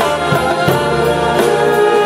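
A wind band of horns, trumpets, trombones and saxophones playing held chords, with a choir singing along and timpani strokes underneath.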